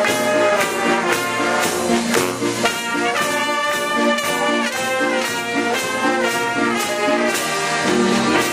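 Brass band music with a steady, march-like beat, with trombones and trumpets carrying the melody.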